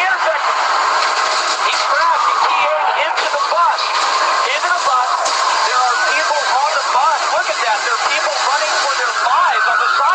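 A man's excited live commentary, thin and narrow-band like a broadcast feed, over a steady hiss.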